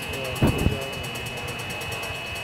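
Golf cart running as it drives along, with a steady high whine throughout and a low thump about half a second in.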